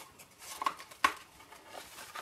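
Cardstock tags and a small card box being handled, light rustling with two short sharp taps near the middle as the tags go into the box.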